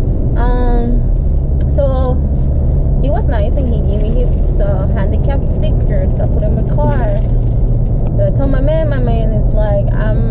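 Steady low road and engine rumble heard inside the cabin of a moving car, with a person's voice coming and going over it.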